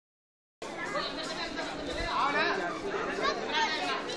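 Overlapping chatter of several people talking at once, starting just over half a second in after a silent start.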